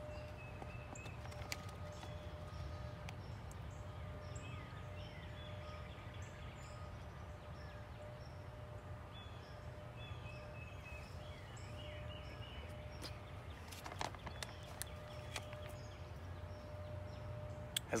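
Quiet woodland ambience: a low steady rumble and a faint steady hum, with distant birds chirping now and then. A few light clicks come about fourteen seconds in.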